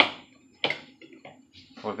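Two sharp knocks of kitchenware being handled at the stove: one right at the start, the louder, and a second about two-thirds of a second later, each with a short ring after it. A voice speaks near the end.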